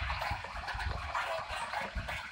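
Live electronic dance music from a festival main-stage sound system, in a washy, noise-filled stretch with low bass pulses and no clear melody.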